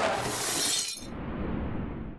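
Sound effect of a long noisy crash, like glass shattering. Its bright, hissing top end drops away about halfway through, and a duller rush carries on for about another second.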